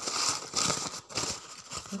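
Paper tissue being crumpled and handled in the hands, irregular crinkling rustles.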